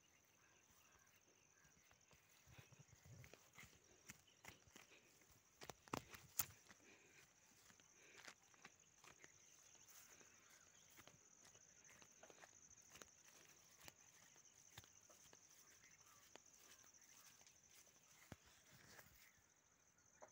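Near silence: a faint outdoor background with a thin steady high-pitched tone and scattered faint clicks and knocks, the loudest about six seconds in.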